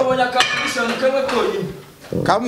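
Metal weight plates clinking and clanking against each other and the bar as they are handled, with a man's voice over it.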